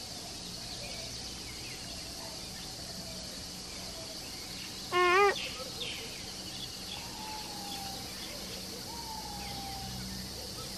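Wild grassland ambience: a steady drone of insects with scattered faint bird whistles, two of them falling in pitch near the end. About halfway through comes one loud, short, wavering call.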